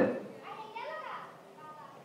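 A faint, high-pitched child's voice in the background, rising and falling from about half a second to a second and a half in, after a man's speech dies away at the start.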